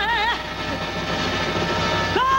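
A woman singer live on stage ends a held note with vibrato a moment in, and the live band's accompaniment carries on as a dense wash until her next note.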